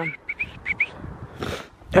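A small bird chirping: four or five short rising notes in quick succession in the first second. A brief rushing noise follows about one and a half seconds in.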